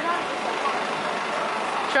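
Steady traffic noise of vehicles moving slowly close by, among them a fire-service van with its engine running and no siren sounding.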